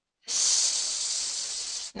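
A long breath out into a close microphone: a breathy hiss of about a second and a half that starts suddenly and eases off slightly before it stops.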